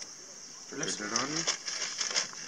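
A steady, high-pitched buzz of cicadas, with people talking over it from just under a second in.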